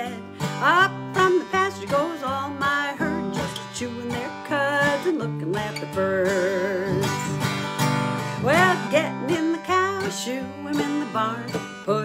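A woman singing a country-style song and accompanying herself on an acoustic guitar.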